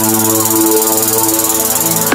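Psytrance music in a section without drums: layered synth chords held steady under a high hissing noise layer.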